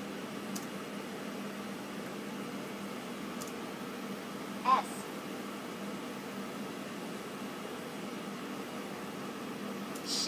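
Steady hiss and low hum of background noise, with a couple of faint, sparse keystrokes on a laptop keyboard. A short pitched chirp sounds about halfway through.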